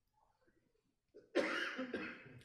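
Near silence, then a single cough from a man close to the microphone, starting sharply about a second and a half in and trailing off.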